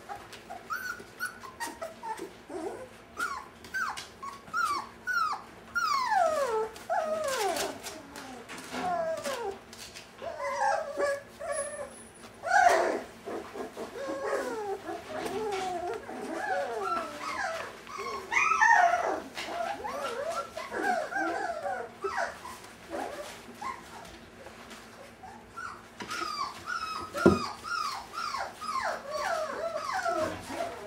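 A litter of five-week-old Brittany puppies whimpering and yelping, many short high cries, mostly falling in pitch, overlapping almost without a break. A sharp knock sounds partway through.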